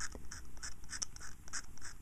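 Scalpel blade scraping black paint lettering off a panel meter's scale in short repeated strokes, about four to five faint scratches a second.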